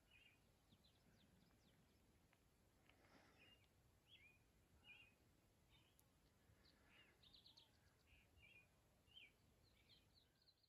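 Faint bird chirps: short calls scattered every second or so, with a quick run of notes about seven seconds in, over a faint low outdoor hiss.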